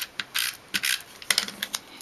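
An adhesive applicator worked over a small cardstock piece pressed to the desk: a quick series of short scratchy strokes and light clicks against paper.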